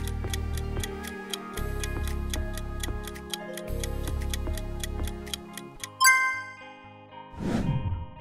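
Quiz countdown timer ticking evenly, about four ticks a second, over a soft music bed, ending in a ringing chime about six seconds in that marks time up, followed by a short swish.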